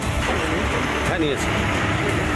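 A motor vehicle's engine running close by, a steady rumble under short bits of men's speech.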